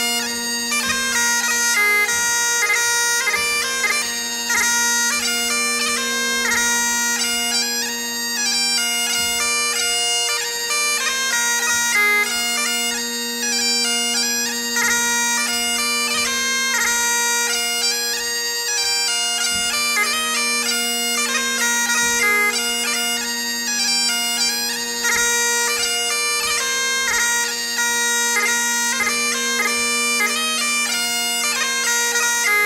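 Great Highland bagpipe played solo for Highland dancing: a steady drone held throughout under a lively, fast-moving chanter melody.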